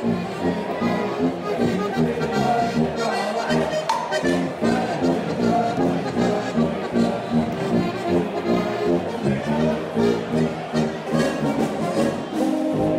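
Live Bavarian beer-hall band with tuba and drum kit playing a lively traditional tune over a steady, regular beat.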